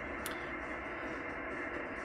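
Shortwave receiver's loudspeaker giving a steady band-noise hiss in upper sideband as a Yaesu FTdx10 is tuned across an empty stretch of the 25 MHz band. The hiss stops sharply above about 3 kHz, at the edge of the receiver's 3 kHz filter.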